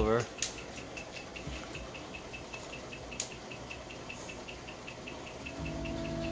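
Quiet room with a faint, even ticking at about five ticks a second and a couple of light clicks. Near the end, music with deep, sustained bass notes starts playing through the speakers and the KEF HTB subwoofer.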